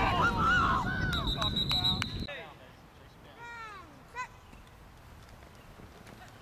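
Spectators shouting over wind buffeting the microphone, with a referee's whistle blown once, about a second in, as a tackle ends the play. The sound drops away suddenly about two seconds in, leaving faint distant voices and a single click.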